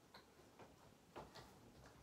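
Near silence: room tone with a few faint, short ticks and a soft knock about a second in.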